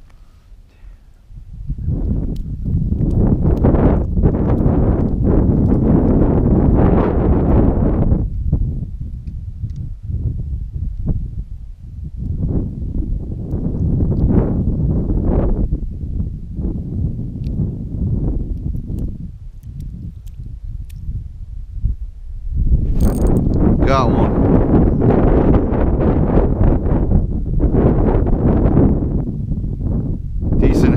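Wind buffeting the microphone in uneven gusts. It starts about a second and a half in, eases twice and builds again near the end.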